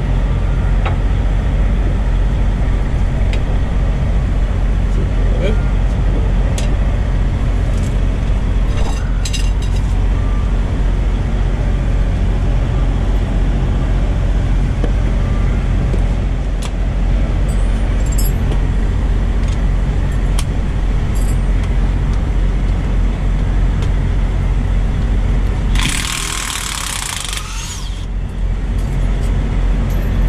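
Diesel truck engine idling steadily, with a few sharp metallic clicks scattered through. About 26 seconds in, a hiss lasts about two seconds.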